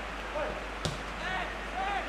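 Open-air sound of a football match: faint, distant voices calling out on the pitch, and one sharp knock a little under a second in, the sound of a ball being kicked.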